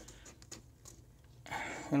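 A light click from a hand on the laptop's plastic back cover about half a second in, otherwise quiet room tone, with a voice starting near the end.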